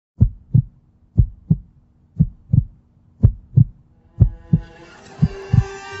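Heartbeat sound effect: six double thumps, about one a second, over a faint low hum, with a swell of music rising in the last second and a half.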